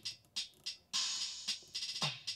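BeatBuddy drum pedal playing a sampled ballad drum beat through a small guitar amp, a string of sharp hits with a longer cymbal-like hiss near the middle, while its tempo is turned up from 92 to 113 BPM.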